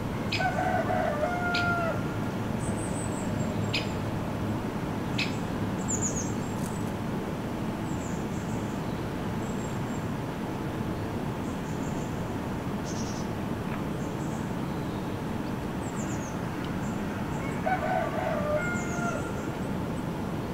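A rooster crowing twice, once just after the start and once near the end, each call about a second and a half long. Small birds chirp in the background over a steady outdoor hiss.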